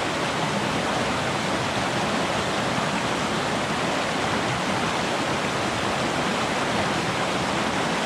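Small waterfall cascading over rocks in a river running low, a steady, unbroken rush of water.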